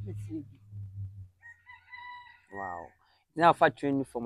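A rooster crowing once in the distance: one long held call starting about a second and a half in, dropping to a lower, louder note at its end.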